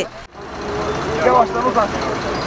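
Roadside field sound: a steady rushing noise of road vehicles, with a person's voice speaking briefly near the middle.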